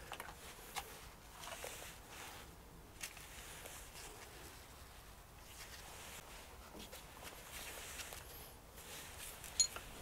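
Faint handling noise: a few soft clicks and light rustles over quiet room tone.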